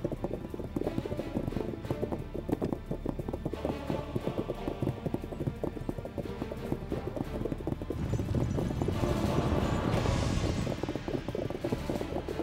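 Several horses galloping, a dense, rapid run of hoofbeats over background music, growing louder about nine to eleven seconds in.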